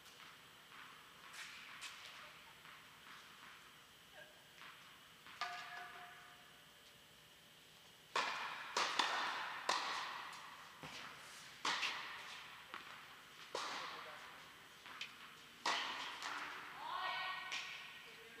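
Tennis balls being struck and bouncing: sharp thuds about every one to two seconds from about eight seconds in, echoing in a large indoor tennis hall. A few brief voices are heard among them.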